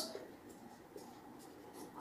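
Marker pen rubbing faintly on a whiteboard as a word is written, in a few short strokes.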